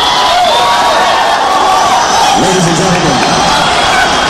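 A large concert crowd cheering, whooping and shouting just after the song ends, many voices at once.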